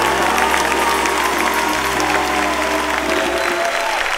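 Jazz big band, saxophones, trumpets and trombones with rhythm section, holding its final chord, which dies away about three and a half seconds in. Audience applause starts under the chord and takes over as it ends.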